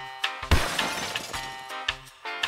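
Background music with a steady beat. About half a second in, a loud glass-shattering crash cuts in and fades over about a second.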